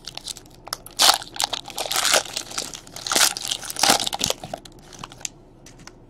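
Trading card pack wrapper crinkling and tearing as it is opened by hand, in irregular bursts of crackle, loudest about a second in and again around three seconds.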